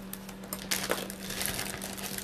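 Crinkling and rustling with many small clicks, louder from about halfway through: jewelry cards and packaging being handled off camera.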